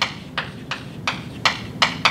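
Chalk writing on a blackboard: about six short, sharp clicks of the chalk striking the board, irregularly spaced over two seconds.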